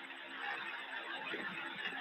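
Quiet room noise in a phone voice recording: a faint steady hiss with a low hum underneath.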